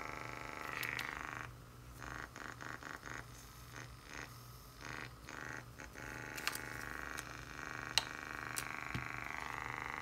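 Small USB aquarium air pump, a simple DC-motor pump, running with a steady buzz. From about a second and a half in, the buzz breaks up and stutters for several seconds, then runs steady again. A single sharp click comes near the end.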